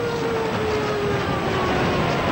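Tsunami seawater surging: a loud, steady rushing noise, with a faint tone slowly falling in pitch through it.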